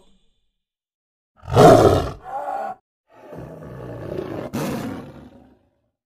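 Tiger roar sound effect: a loud roar about a second and a half in, a short second one right after, then a longer, quieter roar from about three seconds in.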